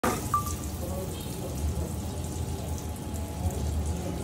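Butter sizzling on a hot flat-top griddle, over a steady low hum.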